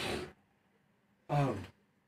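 A person's voice: a breathy exhale at the start, then about a second and a half in a single short voiced sigh whose pitch falls.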